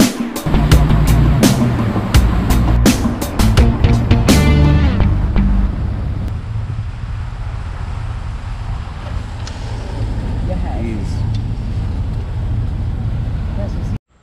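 For the first four or five seconds, music with a steady beat plays over the boat's running noise and ends with a short falling sweep. After that, a boat's engine runs steadily with wind rushing on the microphone as the boat travels.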